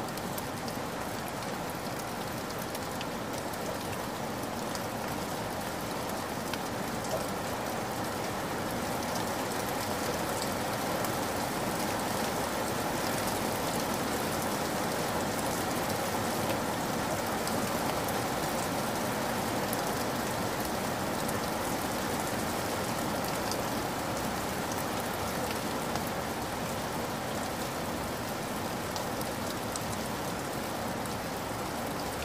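Steady rainfall: a continuous even hiss of rain with faint scattered drop ticks, swelling slightly through the middle.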